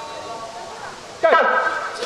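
A man's voice over a public-address loudspeaker, drawn out, starting loudly a little over a second in, after a quieter stretch of outdoor background noise.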